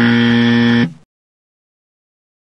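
A game-show-style 'wrong answer' buzzer sound effect: one low, harsh, steady buzz about a second long that then cuts off. It marks the action on screen as a mistake.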